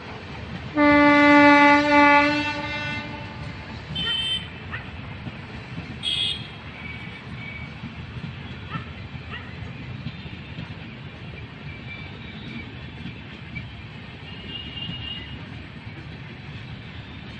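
A train horn gives one long, loud blast of about two seconds, starting about a second in. Then the passenger coaches of a passing Indian Railways express keep running by with a steady low rumble and light wheel clatter.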